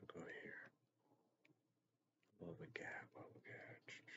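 Quiet, mumbled speech close to a whisper, broken by a pause of about a second and a half in the middle.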